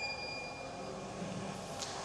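Pause in speech: faint room tone of a hall heard through the recording, a steady low hiss and hum with a thin high whine that fades out about a second in. A short click comes just before the end.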